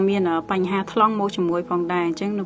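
Only speech: a woman talking steadily in Khmer.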